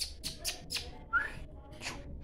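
A person making a string of short, sharp hissing 'tch' calls to a dog, with a brief rising whistle-like chirp about a second in.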